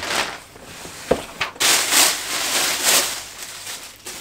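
Cardboard boot box being opened and its packaging rustling and crinkling as a boot is unwrapped and lifted out, with a sharp knock about a second in and louder rustling from about halfway.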